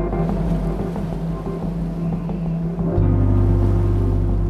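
Background music of sustained held notes; a deep bass note comes in about three seconds in and the music gets a little louder.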